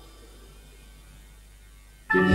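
Low, steady mains hum with faint hiss in a pause between musical passages, as the last of the music dies away.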